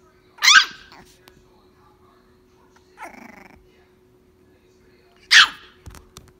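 Small black puppy giving two short, high-pitched barks about five seconds apart, with a quieter, lower sound in between.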